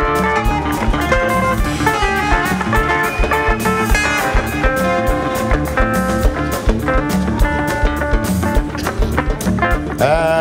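Live band playing: a guitar takes the lead with held, sustained notes over bass and a steady drum-kit beat.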